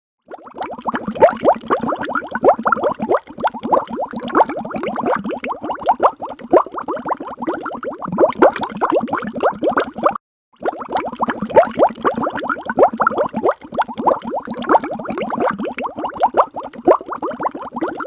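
A loud, dense bubbling and plopping sound effect, many quick falling pops packed close together, in two long stretches with a short silence a little after ten seconds in.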